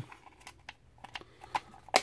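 Hard plastic clicks as the two halves of a Transformers Pretender Finback toy shell are pressed together and closed: a few light clicks, then a louder snap near the end.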